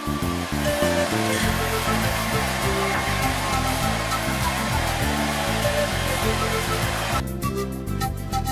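A hair dryer running steadily, an even rushing hiss that cuts off suddenly about seven seconds in, with background music playing underneath.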